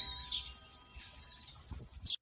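Faint bird chirping, a thin wavering whistle heard twice, as the last ringing notes of a chimed jingle die away.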